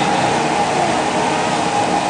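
Steady, loud background noise: an even hiss and hum with a faint tone running through it and no distinct events.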